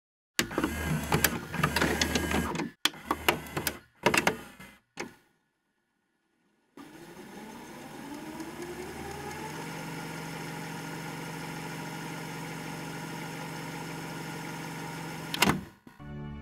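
VHS cassette loading into a video cassette recorder. A run of mechanical clunks and clicks comes first, then a pause. The drive motor then spins up with a rising whine, settles into a steady hum, and a sharp click comes near the end.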